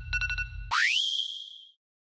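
Cartoon alarm sound effect: rapid electronic beeping over a low hum that stops under a second in, followed by a rising sweep that settles into a high held tone and fades away.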